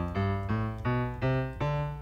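Ascending C major scale played one note at a time on a software piano instrument, triggered from a computer keyboard. Each note is short and clearly separate, and each one is higher than the last. The top note fades out near the end.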